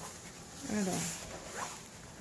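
Canvas and paper rustling as a rolled diamond painting is spread open by hand. A short falling whine sounds near the middle and a brief higher rising squeak follows.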